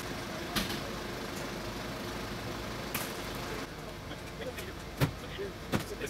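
A delivery van's engine running, with a few sharp knocks like doors closing; the engine noise drops away a little past halfway.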